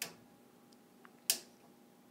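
Plastic ratchet joint on a knockoff Transformers Combaticon figure clicking as it is moved by hand: two sharp clicks, one at the start and one about a second later, with a faint tick just before the second. The ratchet is strong.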